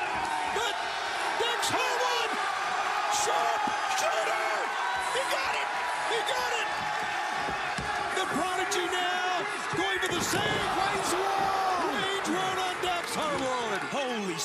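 Arena crowd shouting and cheering at a live wrestling match, with several sharp slams and smacks of wrestlers hitting each other and the ring.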